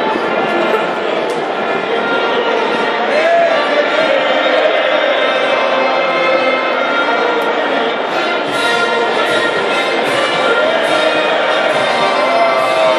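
A national anthem played as an orchestral recording over a stadium's loudspeakers, with a large crowd of spectators singing along.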